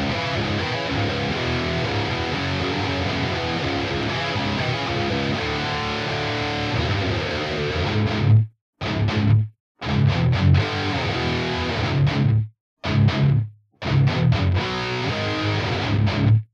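Distorted electric guitar track played through several guitar-cabinet impulse responses that are summed to mono with their time alignment undone, so the IRs are out of phase with each other. It plays as a continuous riff for about eight seconds, then as short phrases cut off by brief silences while the alignment is being adjusted.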